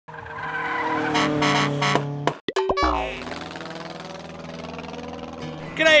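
Electronic intro sting: a steady synthesized tone that swells for about two seconds, a brief glitchy stutter, then a low boom and a held tone that fades away.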